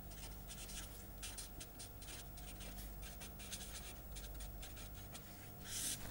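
Felt-tip marker writing on paper: a run of short, faint scratching strokes, with a longer stroke just before the end.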